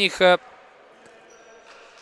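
A man's voice commentating in the first moment, then faint, even sports-hall room tone.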